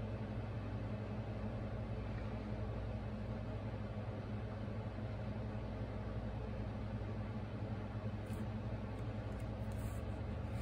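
Steady low machine hum with a constant low drone, from a Heidi Swapp Minc heated roller machine drawing a carrier sheet through its rollers, over the steady whir of a room air conditioner.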